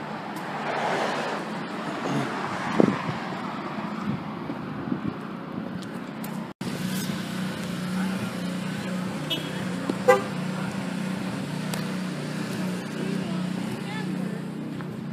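Outdoor road noise with a car passing, then, after a break, a steady low engine drone with a constant hum that runs on.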